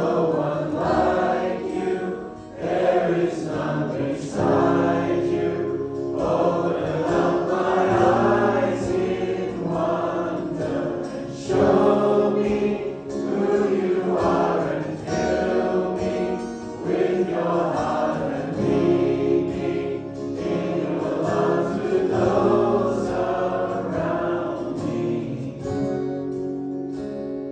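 A congregation singing a worship song together, in long held phrases.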